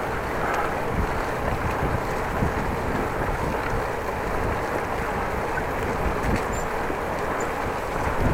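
Steady wind noise on the microphone of a camera mounted on a moving bicycle, mixed with the rolling of the bike over the path.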